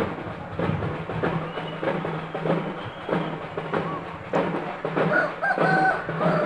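Festival drums beating a steady rhythm, about one and a half strokes a second, over a low steady hum. Near the end a held, pitched call rises above them.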